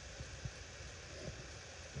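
Faint background ambience: a low steady rumble with a few small, faint ticks.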